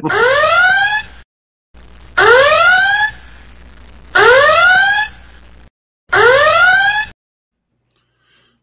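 Whooping alarm sound effect marking a spoiler warning: four loud rising whoops about two seconds apart, each about a second long, ending about seven seconds in.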